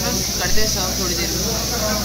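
Steady hiss of steam from a pressure cooker venting in a kitchen, with voices over it.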